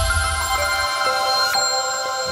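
Electronic chime music of a TV news channel's logo ident: sustained, bell-like tones ringing together. New notes enter about half a second, a second and a second and a half in.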